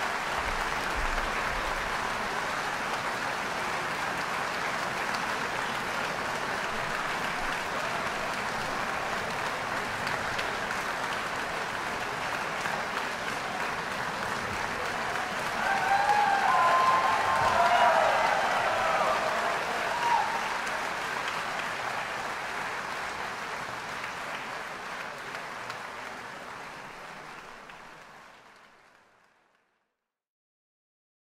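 Concert-hall audience applauding a symphony orchestra, with a burst of cheering voices about halfway through. The applause then fades out near the end.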